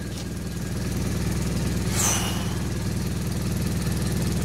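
Mercedes-Benz Vario 814D's four-cylinder turbo diesel idling steadily, heard from inside the coach's passenger saloon, with a brief hiss about two seconds in.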